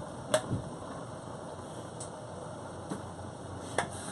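A few sharp, isolated knocks of a knife cutting asparagus on a cutting board, the strongest about a third of a second in, over a low steady background hiss.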